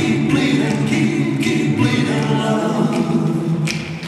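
Recorded vocal music in an a cappella style: several voices singing held chords, dipping briefly near the end.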